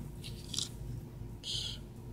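Clear plastic blister packaging of a spinner lure being handled, giving a few faint crackles and one brief sharper crinkle a little past halfway.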